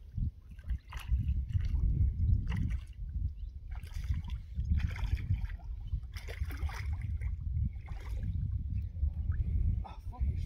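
A hooked trout splashing at the surface in several short bursts as it is played in close to the bank, over a steady low rumble.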